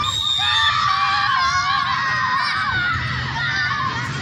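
Several young children shouting and yelling at once, high-pitched, with one long held shout at the start.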